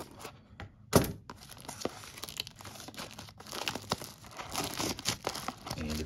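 Scissors cutting the cellophane shrink-wrap on a cardboard box, with one sharp click about a second in, then the thin plastic wrap crinkling and tearing as it is pulled off.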